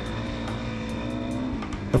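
Suzuki DR-Z400E dirt bike's single-cylinder four-stroke engine running at a steady pace while riding, with background music.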